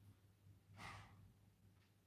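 Near silence with a faint low hum; about a second in, a short faint breath out.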